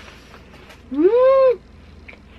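A woman's closed-mouth 'mmm' of enjoyment while chewing a snack: a single hum about a second in, lasting about half a second, its pitch rising then falling.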